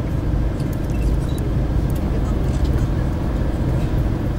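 Steady low rumble of a moving tour bus heard from inside the cabin, engine and road noise together, with a few faint light ticks and rattles.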